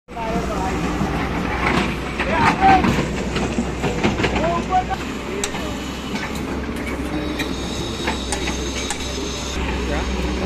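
Tracked JCB excavator's diesel engine running steadily as the arm and bucket work in wet earth, with scattered knocks and clanks from the bucket. A thin high whine joins in during the second half and cuts off suddenly near the end.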